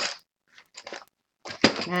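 A set of pencils being put back into its case, with light clicks and rattles of the pencils and packaging: a short burst at the start, a few faint ticks, and a sharper click near the end.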